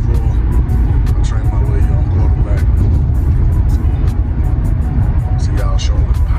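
Steady low road rumble inside a moving car's cabin, under background music with a regular beat and vocals.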